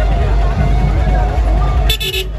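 Loud DJ sound system playing music with a heavy, steady bass, mixed with crowd voices. A sudden harsh burst of sound comes near the end.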